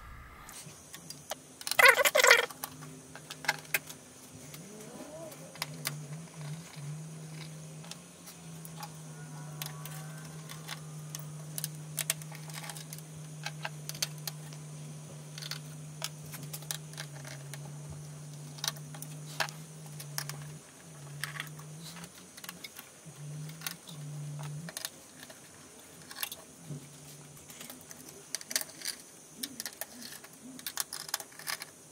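Hand screwdriver removing the screws of a server motherboard: scattered small metallic clicks and clinks, with a louder clatter about two seconds in. A low steady hum sets in after about six seconds and breaks up after about twenty.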